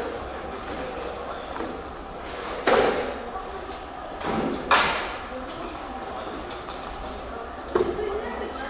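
Indistinct chatter of several people in a room, with two sudden short noises about three and five seconds in.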